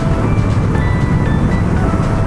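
Background music with short, light notes over the steady running of a Kawasaki Z900RS's inline-four engine while riding at cruising speed.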